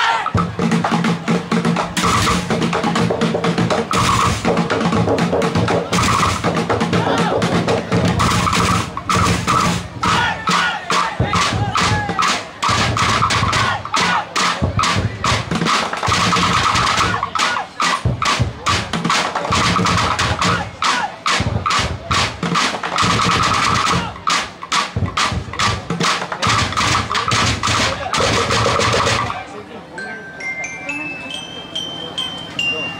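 Drumblek percussion ensemble, drums made from used plastic barrels and tin cans along with bamboo, playing a loud, fast, dense rhythm with drum rolls. The playing stops abruptly near the end.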